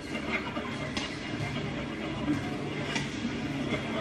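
A brief laugh, then a low, indistinct background of gym noise heard through a television speaker.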